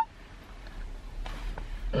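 Quiet mouth sounds of someone chewing dried mango, with a soft breathy noise a little after a second in, over a low steady hum. A closed-mouth 'mm' of enjoyment begins at the very end.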